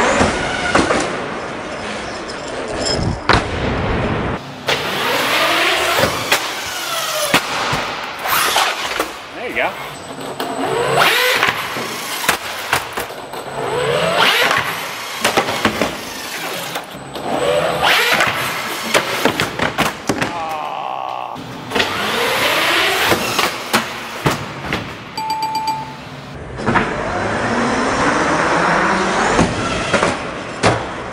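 RC monster truck motors whining, rising and falling in pitch again and again as the trucks throttle up and back off. Clattering knocks of the trucks hitting ramps and landing run through it.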